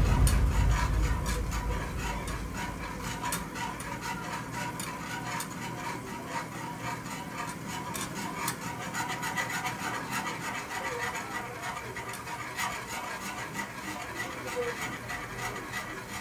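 Wire whisk stirring and scraping against the bottom of a non-stick saucepan of hot milk-and-cream custard: a continuous rapid scratching with many small irregular clicks.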